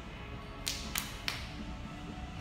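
Three sharp clicks in quick succession, about a third of a second apart, over faint background music.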